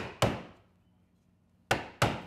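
Small wooden mallet knocking a steel caulking iron, setting caulking cotton into a wooden boat's plank seam: two quick knocks at the start and one more near the end. The cotton is being driven only part way in, into the outer edge of the seam.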